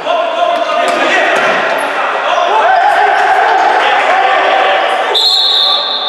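Futsal play on a wooden sports-hall floor: the ball thudding and bouncing, with players' voices calling out over it. A high, steady tone starts about five seconds in.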